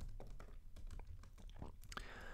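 Quiet, irregular keystrokes of typing on a computer keyboard.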